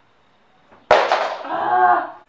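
A woman's sudden loud vocal outburst, a cry or shriek, starting sharply about a second in and lasting about a second.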